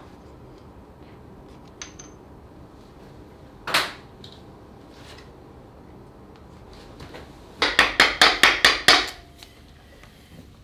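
Metal-on-metal knocks from a stuck exhaust VVT unit being worked off a Volvo B5254T camshaft: one loud sharp knock about four seconds in, then a quick run of about eight clacks near the end as the unit comes loose.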